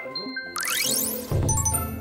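An edited transition sound effect: a fast rising chime sweep about halfway in, then a low hit with bright dings near the end.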